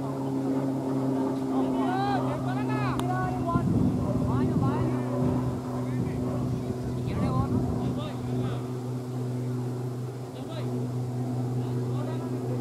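A steady low motor hum runs throughout, with several voices calling out on the field about two to five seconds in and again around seven to eight seconds.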